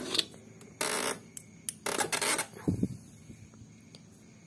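Close handling noise from hands working a removed scooter idle air control valve (IACV): two short rustling bursts, about a second in and about two seconds in, with small ticks between.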